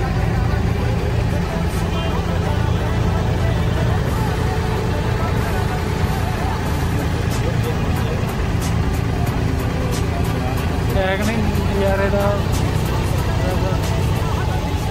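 Boat engine running with a steady low drone while the boat is under way.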